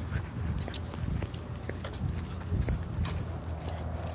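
Footsteps of a person walking, irregular taps and scuffs several times a second over a steady low rumble, the steps moving from grass onto pavement near the end.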